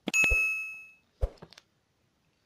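Bright notification-bell ding from a subscribe-button animation, ringing for under a second as it fades. Short clicks come at the start and a couple more about a second later.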